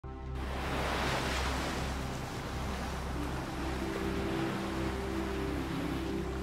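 Ocean surf washing steadily, swelling a little about a second in, over a low sustained music drone.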